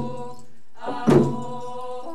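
Hand drum struck in a slow, steady beat, about one stroke every second and a quarter, under a group of voices singing a long held note. The singing breaks off briefly just before the drum stroke a little past halfway, then comes back.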